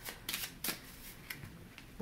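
A deck of Kipper cards being shuffled and handled by hand: a few short, soft card snaps among quiet rustling.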